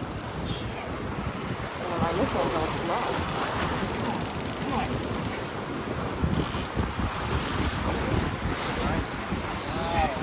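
Steady wind rushing over the microphone, mixed with sea surf, with brief snatches of faint voices a couple of seconds in.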